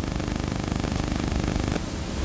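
Steady room noise with no speech: an even hiss over a low hum, the hiss thinning slightly near the end.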